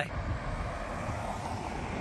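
Steady rumble of road traffic, an even hum with no single vehicle standing out.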